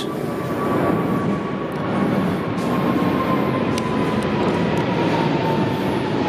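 Jet aircraft passing low overhead: a loud, steady rumble with an engine whine that falls slowly in pitch.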